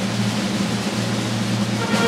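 Audience applauding after a stand-up set, over a steady low hum. Brass music begins just at the end.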